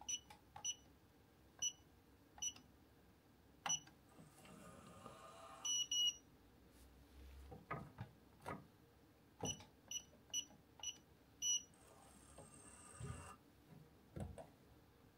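Electronic hotel-room safe keypad beeping: five short beeps as a four-digit code and the # key are pressed, then a short mechanical whirr and a double beep as the safe locks. After a few dull knocks, five more key beeps come as the code is keyed again, followed by another whirr as it unlocks.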